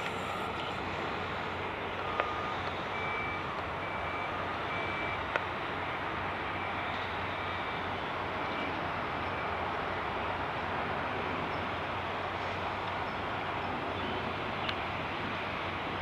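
Steady, even rush of a Boeing 747-400's jet engines heard from afar as it comes in to land. From about two to ten seconds in, faint short beeps at two pitches repeat.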